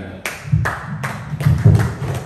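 Handheld microphone handling noise: a quick series of loud thumps and knocks, about six in a second and a half, as the microphone is set down on a clear lectern.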